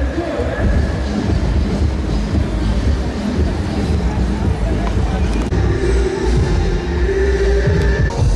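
Music with indistinct voices over a loud, steady low rumble.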